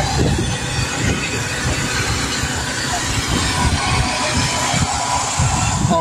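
Wind buffeting a phone's microphone: a steady rushing noise with irregular low rumbling gusts.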